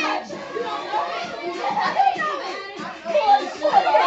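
A group of young people's voices talking and calling out over one another, with music playing underneath.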